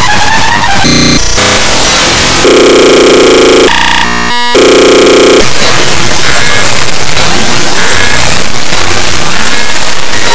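Very loud, heavily distorted and effects-processed cartoon soundtrack, a harsh noisy wash of music and sound with stuttering glitch stretches and a brief dropout about four seconds in.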